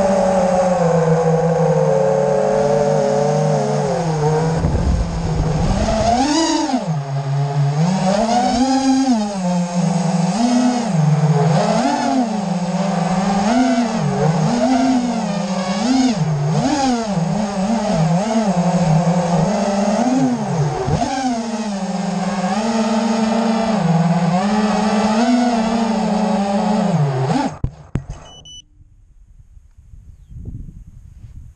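Arris 250B racing quadcopter's brushless motors buzzing loudly, heard from its onboard camera, the pitch swinging up and down about once a second with the throttle. Near the end the buzz cuts off abruptly as the quad lands and its motors stop.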